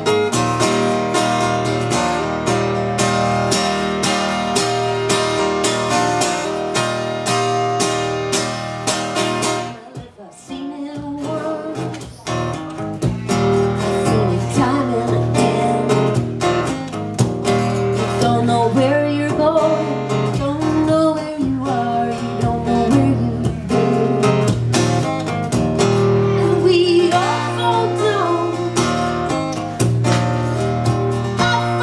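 Acoustic guitar played solo in an instrumental break, strummed steadily, then briefly dropping away about ten seconds in before picking back up with a moving melody line.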